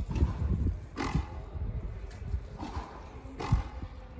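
A few sharp smacks of a frontenis ball struck by racket strings and hitting the frontón wall, the loudest about one second and three and a half seconds in, over a steady low rumble.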